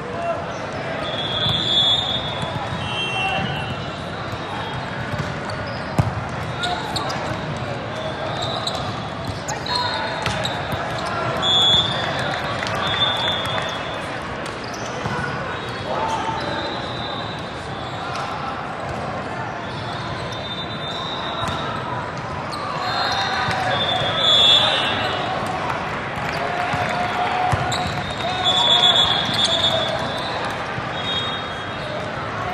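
Indoor volleyball game sounds in a large hall: a hubbub of players' and spectators' voices, shoes squeaking on the court, and the ball being struck and bouncing a few times.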